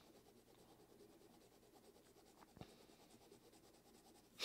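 Very faint scratching of a Parker Jotter fountain pen's nib writing on paper, with one small tick about two and a half seconds in.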